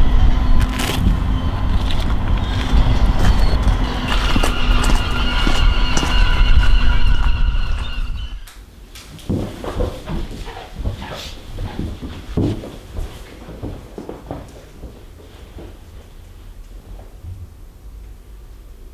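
Loud street noise with traffic for about the first eight seconds. It then cuts off suddenly to a quieter room, where footsteps and shuffling movement come as people walk in.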